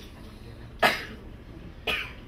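A person coughing once, sharply, about a second in, followed by a shorter breathy sound near the end.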